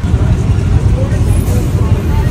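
Steady low rumble of a passenger train rolling past, mixed with the engines of motorbikes and an auto-rickshaw idling in the traffic waiting for it.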